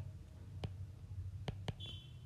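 A few light, sharp clicks of a stylus tapping on a tablet while writing, over a steady low hum, with a brief high-pitched beep-like tone near the end.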